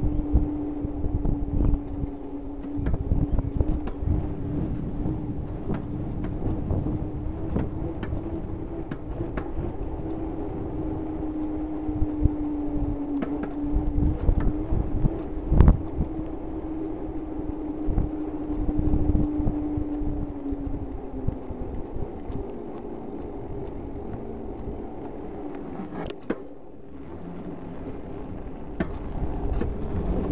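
Bicycle rolling on asphalt, heard through a handlebar-mounted camera. A knobby tyre hums in one steady tone that dips slightly and fades about two-thirds of the way through, over wind rumble on the microphone and frequent small knocks and rattles from road bumps.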